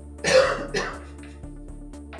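Background electronic music with a steady beat. A quarter of a second in, a person gives a short two-part throat-clearing cough, the loudest sound here.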